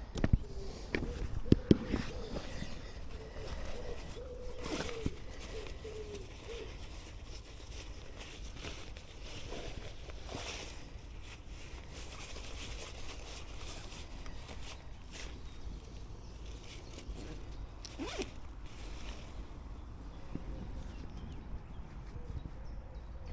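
Backpack zip and rummaging: a rucksack zipper is pulled and the bag and a small camera are handled, giving scattered clicks, scrapes and rustles, busiest in the first few seconds.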